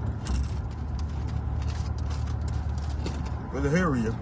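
Car cabin rumble from the engine and road, steady and low, with a few faint ticks. A short vocal call rises and falls near the end.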